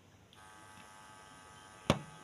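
A faint steady electrical buzz with many even overtones, starting shortly after the start, then a single sharp click near the end.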